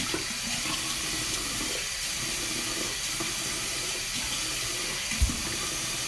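Warm water running steadily from a tap into a bathroom sink, with one short thump about five seconds in.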